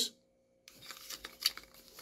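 Faint handling noise of a metal-and-plastic caster turned in the hands: light rubbing with a few small clicks, the sharpest about one and a half seconds in, after a brief dead-silent gap at the start.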